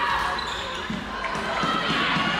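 Live floorball play in a reverberant sports hall: short knocks of sticks, ball and footsteps on the wooden floor, under indistinct players' calls.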